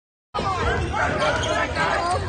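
Indoor basketball game sound that cuts in abruptly about a third of a second in: a ball bouncing on the hardwood court amid players' and spectators' voices, echoing in the gym.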